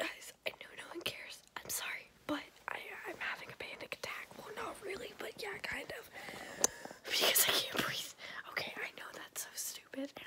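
A young woman whispering close to the microphone, with a louder breathy rush about seven seconds in.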